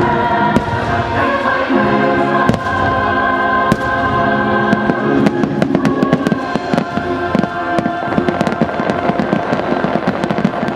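Fireworks bursting in the sky, sharp bangs and crackles that come thicker in the second half, over the show's music with a choir.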